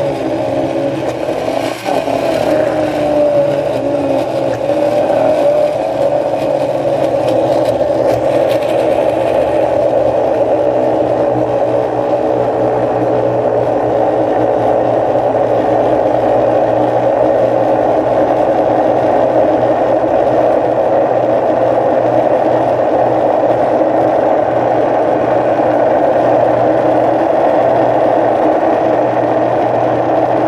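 Countertop blender with a glass jar running steadily on frozen banana chunks with no liquid added, blending them into a thick cream. There is a brief dip and a knock about two seconds in. In the first ten seconds or so there is more rattle and hiss than later, when it settles into a smoother whir.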